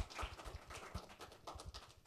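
Audience applauding: a patter of separate, irregular hand claps.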